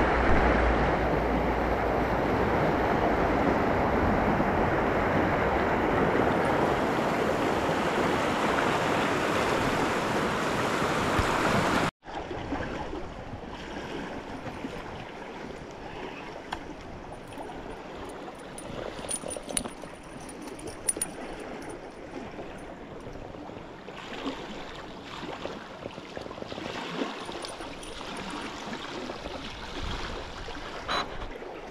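Fast river water rushing over rocks, loud and steady, then after a sudden cut about twelve seconds in, a quieter flow of water with scattered faint clicks.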